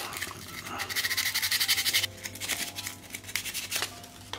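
Sandpaper rubbed in quick strokes on a small plastic hinge part of a folding table, smoothing a part that had been deformed and was making the joint stiff. There is a quick run of strokes about a second in, then a few scattered scrapes, over faint background music.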